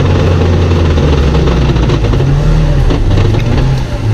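A vehicle engine running with a low drone that rises and falls in pitch a couple of times, under a steady rush of noise.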